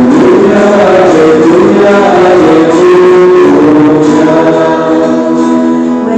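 Voices singing a Portuguese Alleluia gospel acclamation, accompanied by acoustic guitar.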